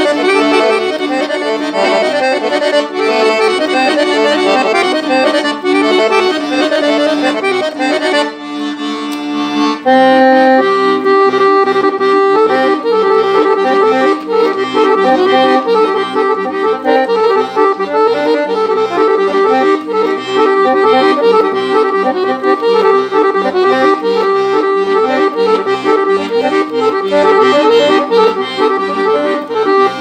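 Weltmeister piano accordion playing a Bulgarian rachenitsa dance tune. There is a brief lull near eight seconds, and from about ten seconds in the playing is louder and fuller, with a rhythmic bass line underneath.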